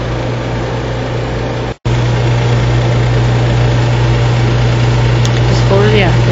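Steady rushing of a lampworking torch flame melting glass for beads, over a constant low hum. The sound cuts out for an instant a little under two seconds in, and a voice starts near the end.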